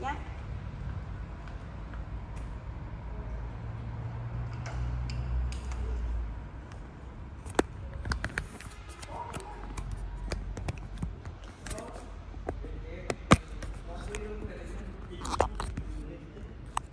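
Handling noise from a smartphone being fitted to a selfie stick: a low rumble for the first few seconds, then scattered clicks and knocks, the sharpest about 13 seconds in.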